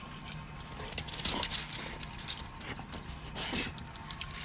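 Metal tag and leash clip on a dog's collar jingling as the dog moves about, louder from about a second in.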